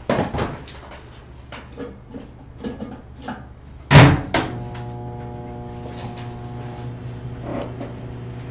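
A microwave oven door shuts with a loud clunk about four seconds in. Right after, the oven starts running with a steady electrical hum. Before that there are a few lighter knocks and clatters of handling.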